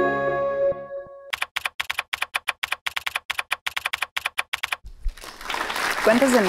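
The last notes of an intro music sting fade out about a second in. Then comes a fast run of sharp typing clicks, like a keyboard or typewriter, about eight a second for some three and a half seconds. Applause fades in near the end.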